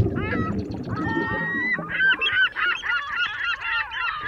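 A flock of birds calling: many short honking calls, rising and falling in pitch and overlapping one another, over a low rushing noise that fades out about halfway through.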